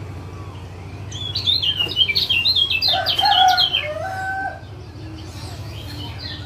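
Kecial kuning, the Lombok yellow white-eye, giving a rapid string of high 'ciak' chirps that starts about a second in and stops at about four and a half seconds. A lower, held call overlaps the last second and a half of the chirping.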